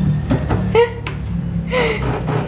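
A young child's high voice in short calls and exclamations, over background music with a steady low note.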